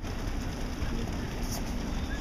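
Outdoor city-street ambience: a steady low rumble with no clear single source, and a few faint clicks about one and a half seconds in.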